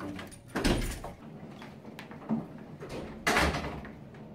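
A key working a door lock and a wooden door being opened and shut, with two loud thuds, one about half a second in and one about three seconds in, and smaller knocks between.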